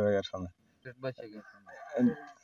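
A rooster crowing faintly in the background, one drawn-out crow starting about one and a half seconds in, under a man's speech.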